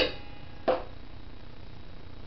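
A light knock on a stainless steel mixing bowl that rings briefly, then a second, softer knock under a second later, over a faint steady background hum.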